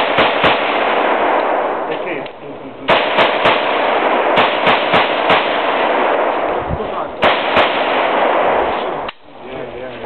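AK-74 rifle in 5.45×39 firing quick strings of shots about a third of a second apart, in four groups, with a long echo filling the gaps between them. The shooting stops about nine seconds in.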